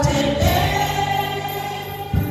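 A group singing a gospel hymn together in a church. The voices change note about half a second in, then hold one long note.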